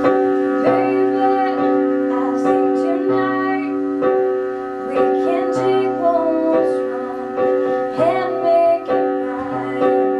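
Piano-toned keyboard accompaniment playing sustained chords, struck again about once a second, with a higher melody line moving over them in an instrumental passage between sung verses.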